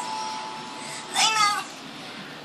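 A cat meowing once, a short call that rises then falls, about a second in.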